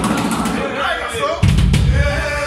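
Voices in a loud live-music club between songs, with a heavy drum-kit hit, a deep thud with cymbal crash, about one and a half seconds in.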